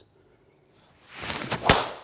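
Golf driver swinging through, a rising swish, then a single sharp crack as the clubhead strikes the teed ball, struck off the toe ("very, very toey").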